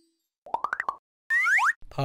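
Cartoon sound effects: a quick run of about six short plops climbing in pitch, then a brief upward-gliding swoop.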